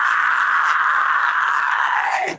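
Isolated deathcore harsh vocal: one long, high, raspy scream held steady without a break and without a clear pitch.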